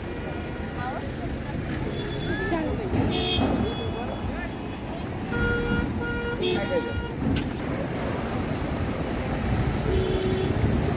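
Roadside traffic noise with people talking around; a vehicle horn gives a run of short toots a little past the middle.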